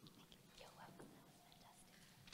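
Near silence, with faint, low murmured voices.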